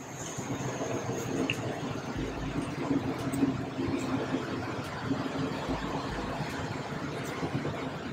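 Steady, fairly quiet room noise: an even hiss with a faint low hum and a few brief low rumbles.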